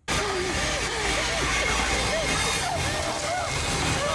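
Horror film soundtrack: a steady low rumbling drone, with short, strained voice sounds rising and falling over it. It cuts in suddenly at the start.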